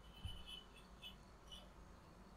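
Near silence: room tone with a low hum, broken by a few faint, short high-pitched chirps in the first second and a half.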